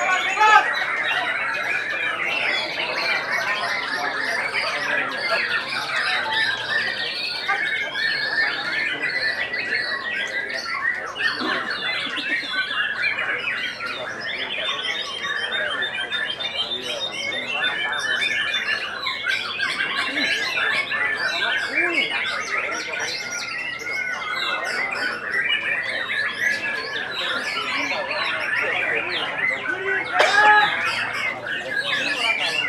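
Several caged white-rumped shamas (murai batu) singing at once in a songbird contest: a continuous dense mix of loud whistles, rapid trills and harsh chattering phrases, with a murmur of human voices beneath.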